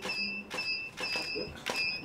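A series of short, high electronic beeps, about two a second, one held slightly longer, under faint voices.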